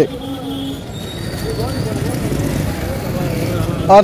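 Busy street ambience: a steady low rumble of traffic under the chatter of a crowd, with a short steady tone in the first second.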